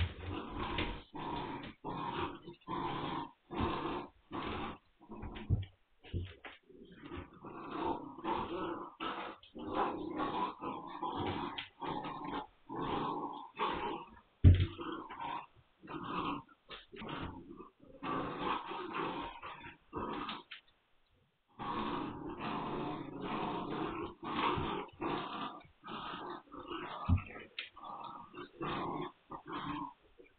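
Magyar Vizsla puppies growling in play while tugging at a toy, in quick irregular bursts with a short pause about two-thirds of the way through. One thump comes about halfway.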